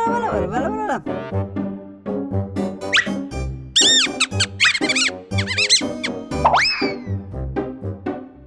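Cartoon background music with a regular bass pulse, over which a high-pitched, squeaky cartoon mouse voice shouts in a run of gliding squeals around the middle, with a shorter gliding vocal near the start.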